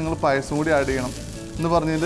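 Food sizzling in a hot pan, a steady hiss under a man talking.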